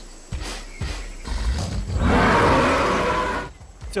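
An animated ankylosaur's roar, a sound effect: a loud growling roar that builds about a second in and stops shortly before the end, after a few low thuds.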